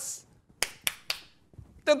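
Three quick finger snaps about a quarter of a second apart, short and sharp.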